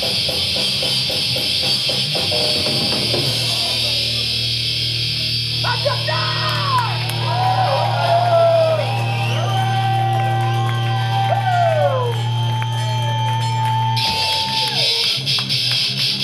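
Live metal band playing loud and distorted: a fast riff with drums, then a long held low chord under an electric guitar solo full of bends and glides, before the full band comes back in about two seconds before the end.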